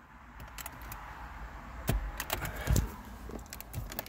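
Scattered light clicks and taps with a couple of dull knocks over a rustle of handling, as fingers work a tight aluminium knob cover onto a car's climate-control knob.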